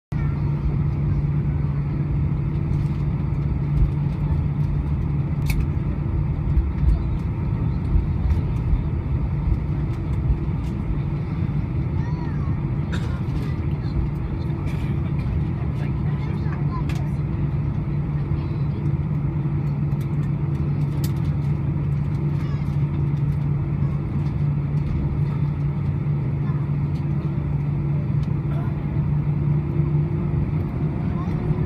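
Cabin noise of an Airbus A320-214 taxiing, heard from a window seat beside the wing: the CFM56 engines run steadily at low power with a steady low hum, and sharp clicks come now and then.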